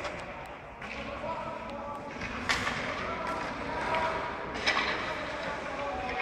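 Ice hockey practice in an indoor rink: players' voices calling out, not clearly made out, with two sharp puck impacts, one about two and a half seconds in and another near five seconds.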